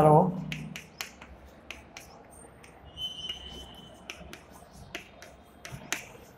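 Chalk writing on a blackboard: scattered short, sharp taps and scrapes as the letters go on, with a brief high squeak about three seconds in.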